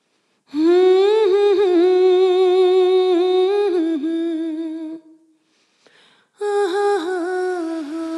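A woman singing unaccompanied: a long held note of about four seconds, steady in pitch but decorated with quick ornamental turns, then after a short pause a second held phrase begins near the end.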